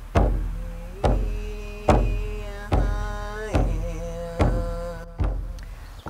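A large hand drum struck steadily with a padded beater, a deep boom about every second, seven beats. A voice sings long held notes over the beat.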